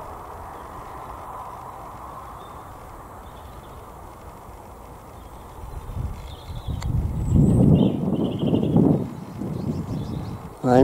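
Steady faint outdoor background, then from about six seconds in, loud irregular low rumbling on the camera microphone. A few faint high bird calls come through over the rumble.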